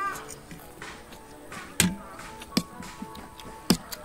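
Forks clicking against plates while noodles are eaten: three sharp clinks spread over about two seconds, the last the loudest, over faint background music.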